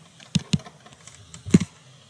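Stylus tapping and clicking against a tablet surface while handwriting: a handful of separate sharp clicks, the loudest about a second and a half in.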